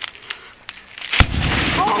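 A CRT television's picture tube being smashed: a few light clicks, then about a second in a sudden loud bang as the tube breaks, with noise carrying on after it.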